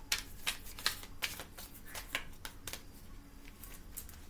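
A tarot deck being shuffled by hand: a string of quick, irregular card flicks and slaps.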